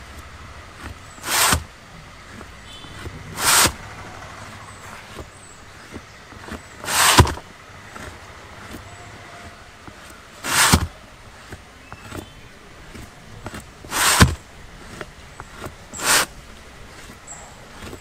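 A piece of chalk drawn across the rubber of a car tyre, marking cut lines: six short scraping strokes a few seconds apart.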